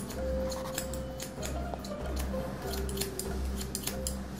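Barber's hair-cutting scissors snipping short hair over a comb, in quick, irregular snips a few times a second, over background music with a soft pulsing bass.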